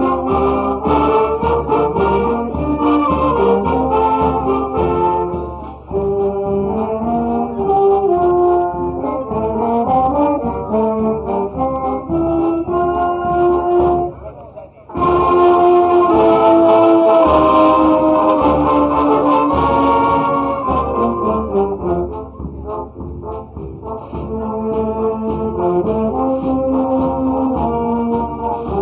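A wind band of saxophones, trombones, euphonium and trumpets playing a tune in held, stepping notes. The music breaks off briefly about halfway, then comes back louder and fuller.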